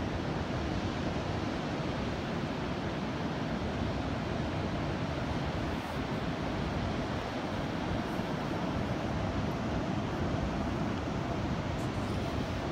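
Steady rush of ocean surf, with wind.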